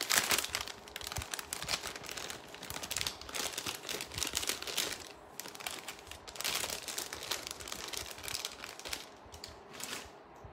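Clear plastic jewelry packets crinkling and rustling as they are handled, in uneven flurries, louder near the start and again a few seconds in.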